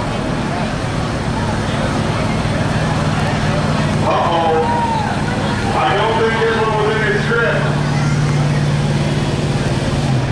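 Dodge Ram pickup's engine running hard under load in a steady drone as it drags a weight-transfer sled down a dirt pulling track, growing stronger in the second half.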